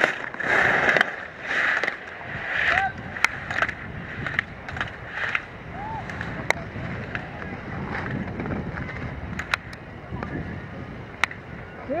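Slalom skis carving hard-packed snow: a scraping hiss with each turn, about once a second, loudest in the first few seconds and then fading as the skier moves away. A few sharp clicks follow later on.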